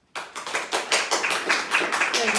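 A small audience applauding, starting suddenly just after the song ends and swelling over the first second into dense, irregular clapping.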